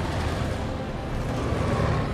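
Military truck engines and tyres on a dirt track: a steady low rumble of vehicles driving at speed, as mixed for a film soundtrack.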